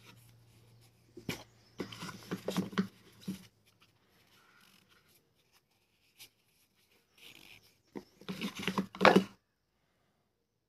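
Rustling, rubbing and light knocks of a ceramic coating kit being handled in its card box: the foam applicator block, cloth and bottle moved about, in irregular bursts. The sound cuts off abruptly near the end.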